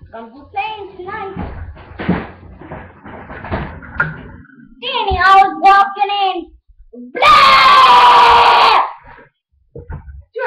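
Young voices calling out and talking, then a loud scream held for about a second and a half, a little past seven seconds in.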